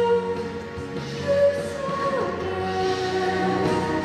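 A woman singing solo into a handheld microphone, long held notes over a sustained backing, with a downward slide in pitch a little after two seconds.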